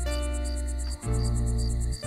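Crickets chirping in a fast, pulsing high trill over a soft music score of sustained low chords, which change about halfway through.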